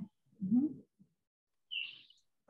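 A person's brief murmured "hmm" with rising pitch, then near the end a single short high chirp.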